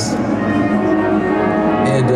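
Electric guitar notes from a 1959 Gibson Les Paul ringing on steadily through an amplifier.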